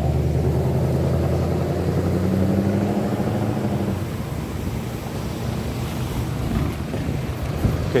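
A delivery van's engine drones close by, its pitch rising slowly over the first four seconds. It then gives way to rougher engine and tyre noise as the van reaches the microphone and drives past over the tracks.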